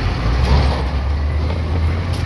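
Diesel truck engine running, heard from inside the cab: a steady low rumble as the truck moves off.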